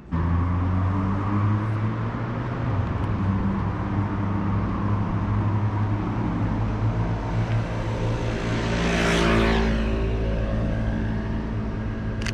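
Street traffic: a motor vehicle's engine runs steadily close by, and a vehicle passes about nine seconds in, growing louder and then fading.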